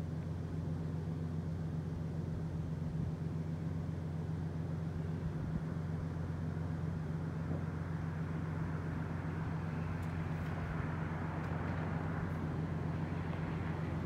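Road traffic under a steady low hum, with the tyre and engine noise of a passing vehicle swelling and fading in the last few seconds.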